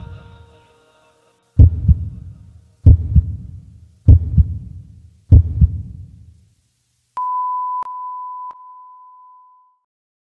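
A heartbeat sound effect ends the song: after the last music dies away, four heavy low double thumps come evenly about a second and a quarter apart. About seven seconds in, a single long, steady high beep like a heart monitor's flatline sets in and fades out over about two and a half seconds.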